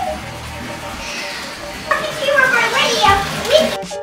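A young boy's voice chattering and playing in a bathtub over background music, in the second half.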